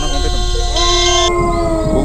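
A long, drawn-out howl made of held tones that slowly fall in pitch, with talking over it.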